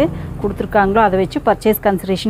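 Speech only: one person talking steadily.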